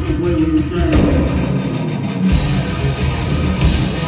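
A heavy rock band playing live, with electric guitars, bass and drums. Between about one and two seconds in the sound thins out, the cymbals and low end dropping away, then the full band crashes back in.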